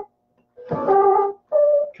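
Ensoniq Mirage sampling keyboard playing two short chords, the first starting about half a second in and the second right after it, each stopping abruptly. The sampler is faulty and sounds lo-fi, its sampled notes unsteady in pitch.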